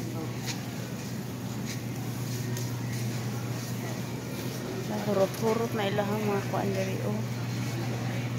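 A person's voice speaking briefly from about five seconds in, over a steady low hum and a few faint clicks.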